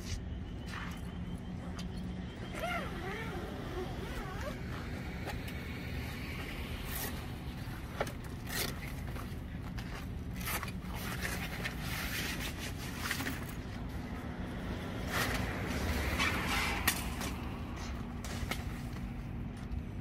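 Canvas fabric rustling and flapping, with zip and buckle noises and a few sharp clicks, as a Bundutec Bundusuite shower-and-annex tent is unpacked from under a rooftop tent and its walls drop open. A steady low rumble runs behind it.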